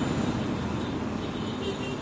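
Steady low rumble of road traffic and engines, fading slightly.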